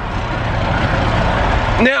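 A semi truck's diesel engine idling close by, with a low rumble under a loud rushing noise that grows louder, then drops away suddenly just before the end.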